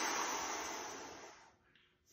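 A man's full exhale through pursed lips: a steady breathy hiss that slowly tapers off and stops about a second and a half in.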